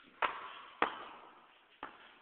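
A basketball hitting hard surfaces three times, around the rim, backboard and floor. Each hit is sharp and rings out briefly, and the gaps between them lengthen.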